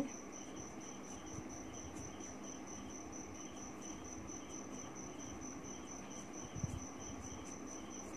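A quiet background with a steady high-pitched tone and a soft chirping pulse about three times a second, insect-like, under faint pen strokes on paper.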